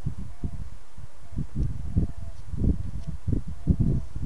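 A carving knife cutting a small wooden figure held in the hand: soft, irregular low scrapes and bumps, with a few faint short squeaks.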